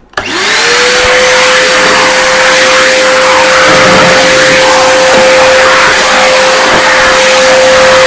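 Canister vacuum cleaner switched on, its motor whine rising quickly to a steady pitch and then running loudly and evenly as the wand is pushed across a rug.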